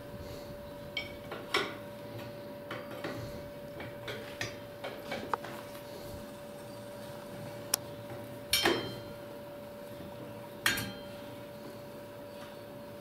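Metal clinks and knocks of a steel roller drive chain and its sprockets being handled and fitted on a grain dryer's drive: light scattered clicks, then two louder knocks about two-thirds of the way in and near the end, over a faint steady hum.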